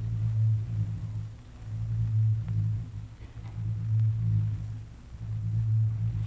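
Low hum on an old archival recording, swelling and fading about every two seconds, with no speech over it.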